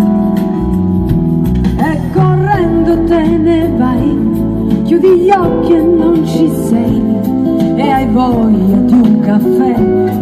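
A live band playing through the PA: held chords, then a woman's singing voice comes in about two seconds in, over guitar and band accompaniment.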